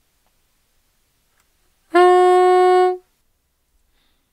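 Bb soprano saxophone playing one held mid-range G-sharp (no octave key), steady in pitch, lasting about a second, starting about two seconds in.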